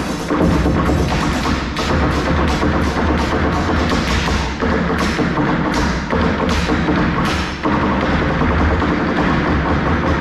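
Live stage percussion music: several performers drumming together in a driving rhythm, with sharp, repeated knocks over a heavy low beat.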